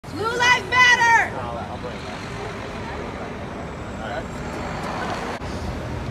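A voice calls out briefly at the start, then steady city street noise: a traffic hum with faint voices behind it.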